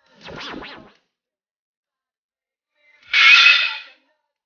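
Two short edited sound effects: first a brief rattle of three or four quick strokes, then about three seconds in a much louder, bright burst lasting under a second, just before the cut to the next screen.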